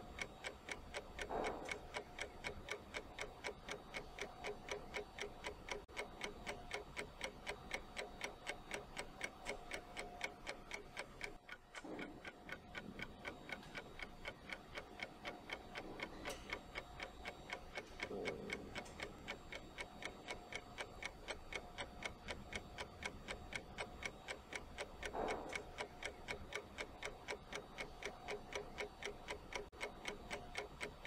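Clock-ticking sound effect counting down an on-screen one-minute timer: steady, evenly spaced ticks with no speech.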